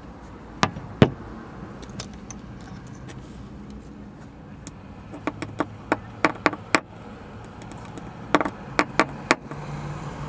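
Light, sharp taps of a small hand-held steel repair pin on windshield glass at a stone chip, struck to make the chip's cracks connect: two taps about a second in, then a quick run of taps around five to seven seconds and a few more near the end.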